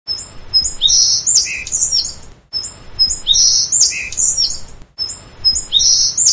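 Birdsong of high chirps and whistles, a short recording played three times in a loop about every two and a half seconds, with a brief silent break between repeats.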